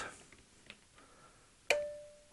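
A single sharp click about 1.7 s in, fading over about half a second with a short steady tone beneath it: the relay of an AVM FRITZ!DECT 210 smart plug switching off, cutting both the live and neutral conductors.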